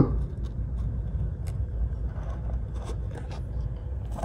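Steady low background rumble, with a few faint light clicks as fingers handle and turn over moth pupae on a hard surface.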